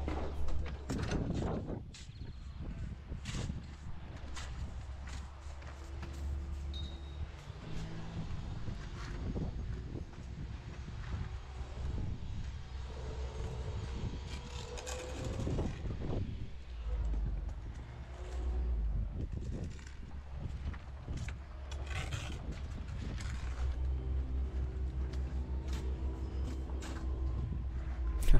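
Bricklayers' steel trowels scraping and spreading mortar and tapping solid concrete blocks into place: a string of irregular scrapes, knocks and clinks over a steady low background rumble.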